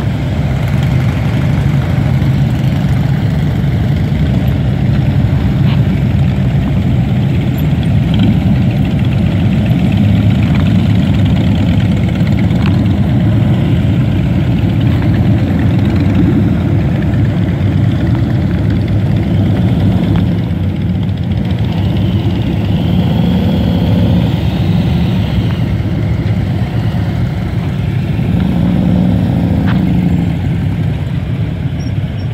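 Procession of touring motorcycles riding slowly past one after another, their engines running in a loud, steady, overlapping low drone.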